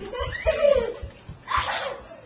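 A young child's wordless, high-pitched cries and squeals, gliding in pitch, with a second sharp cry about a second and a half in, over the thumps of running footsteps.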